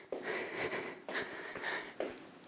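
A woman breathing hard during cardio exercise, several quick in-and-out breaths in a row.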